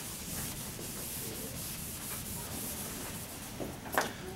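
Faint, repeated rubbing strokes against a lecture whiteboard, with one short, sharper sound near the end.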